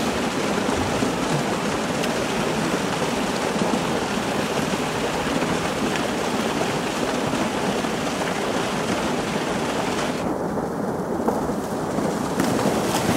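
Steady rushing of running water in a polar bear's pool, a rain-like hiss that holds at one level, its higher part thinning briefly near the end.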